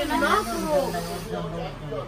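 A woman's voice, casual and unscripted, drawing out one long, slowly falling low sound through the second half.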